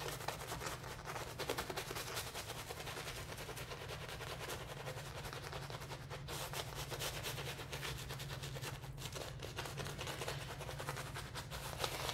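Soft synthetic shaving brush working shaving-soap lather on the face and neck: a steady wet swishing with fine, rapid popping of lather bubbles, over a steady low hum.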